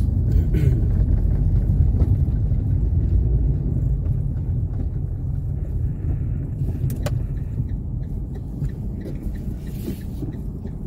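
Car driving along a paved street: a steady low rumble of engine and tyre noise that eases off somewhat partway through, with a single sharp click about seven seconds in.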